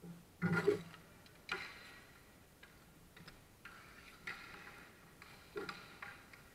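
Several sharp clacks of hockey sticks and ball during dek hockey play, the loudest about half a second in and others spread through the rest.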